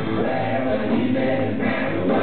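Live rock band playing, with electric guitar, bass, keyboard and drums under several voices singing together. Full, loud band sound, recorded from the audience with the top end cut off.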